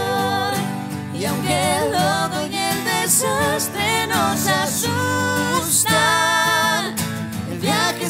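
Acoustic pop-rock song: acoustic guitar accompanying a sustained, wavering sung vocal line.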